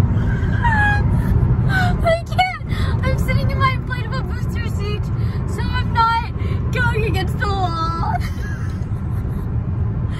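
A woman laughing hard in a series of high, rising and falling gasps and squeals. Underneath is the steady low rumble of road noise inside a moving car.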